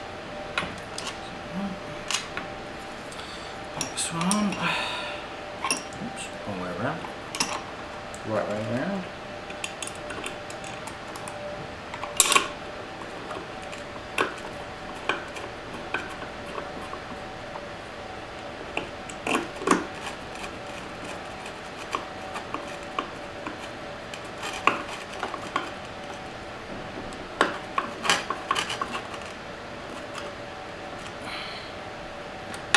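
Screwdriver, small screws and hand tools clicking and clinking against the inverter's finned metal case and the bench, in a string of irregular sharp taps and knocks.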